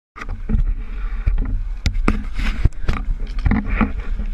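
Irregular sharp knocks and rubs of hands handling a small camera, about two a second, over a steady low rumble.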